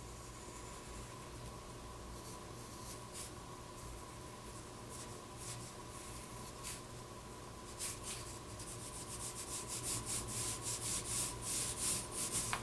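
Pencil drawing on paper: faint strokes, a few scattered at first, then quick repeated strokes coming thick and fast over the last four seconds.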